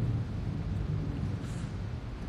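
A steady low rumble of background noise with a faint hiss over it, no distinct events.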